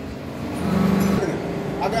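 Steady low machine hum from a double-action scrap baling press, swelling louder for about half a second mid-way. A man's voice starts near the end.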